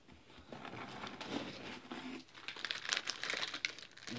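Packaging crinkling and rustling in irregular crackles as hands rummage in a cardboard box of groceries and lift out a packet, starting about half a second in.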